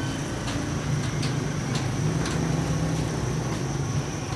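A motor vehicle engine runs with a steady low hum, a little louder through the middle, while a few light metal clicks come from the rear doors of a small cargo truck being pushed shut and latched.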